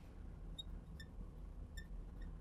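Faint, brief squeaks and ticks of a marker writing on a glass lightboard, a few scattered through, over a low steady room hum.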